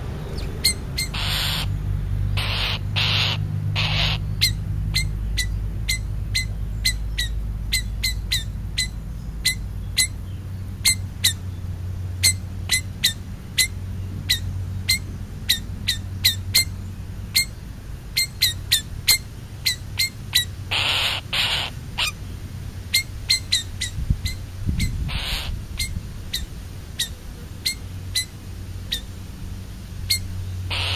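American crow giving short, harsh caws: four in the first few seconds, two more near the two-thirds mark and one soon after. Many sharp clicks, roughly one or two a second, run between the calls over a low steady hum.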